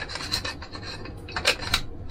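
Camera lens being twisted onto a stack of macro extension tubes: the mounts scrape and rub against each other, with a run of small clicks, the sharpest about one and a half seconds in.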